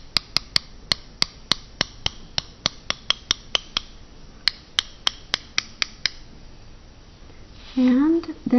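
A paintbrush loaded with watercolour tapped repeatedly against another brush's handle to splatter paint flecks: sharp light clicks, about three or four a second, stopping about six seconds in.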